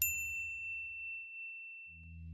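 A single high, bell-like ding struck once as a logo sting, ringing out and fading over about two seconds. A low rumble beneath it dies away in the first second or so.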